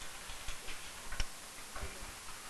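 A few scattered light clicks and taps over faint room noise, the sharpest a little past a second in.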